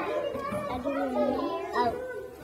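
A young girl talking, a child's high voice retelling a short story in halting phrases.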